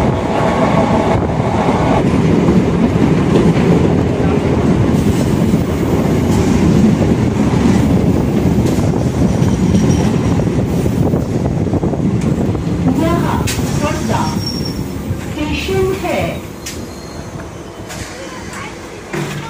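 Electric suburban local train (EMU) heard from inside the coach, running with a loud, steady rumble of wheels on rail. Near the end it slows into a station: a few brief squeals sound and the rumble fades.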